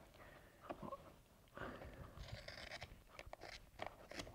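Scissors snipping through a cast latex rubber mask, faint, with a few small snips about a second in and more of them in the second half.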